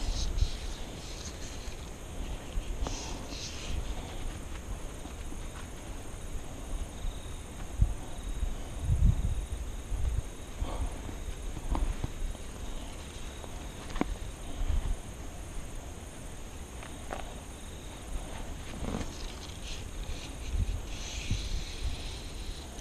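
Wind rumbling on the microphone, with a handful of scattered small knocks and clicks, the sounds of fly rod and line being handled.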